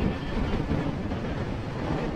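Steady wind and road noise from riding a motor scooter at speed, with the scooter's engine running underneath.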